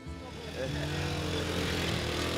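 Small motorcycle engine running at a steady pitch, rising slightly about half a second in, over a light street hubbub.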